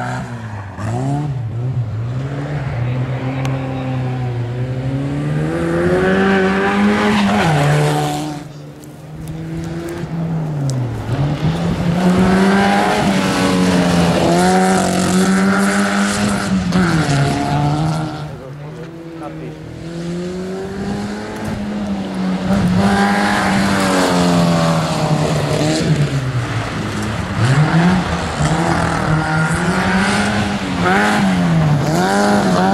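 A rear-engined Škoda Estelle rally car's four-cylinder engine driven hard on gravel. Its pitch repeatedly climbs and falls as it is revved through the gears and lifted for corners, and it drops away briefly twice, about a third and two thirds of the way through.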